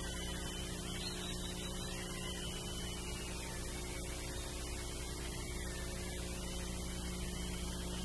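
Steady electrical mains hum with a hiss beneath it, and no music or voices.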